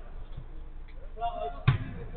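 A football struck once on a five-a-side artificial-turf pitch: a single dull thump with a short ring, near the end.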